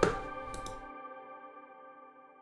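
A short click, then the fading tail of a stopped synthesized bass line: steady tones ring on and die away over about a second and a half.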